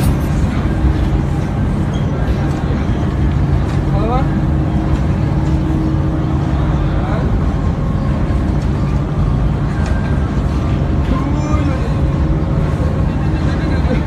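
Loud, steady crowd hubbub: many voices talking at once over a dense wash of hall noise, with no single voice standing out.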